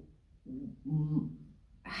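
A woman's voice making two short hummed syllables, a wordless hesitation sound, with near silence around them.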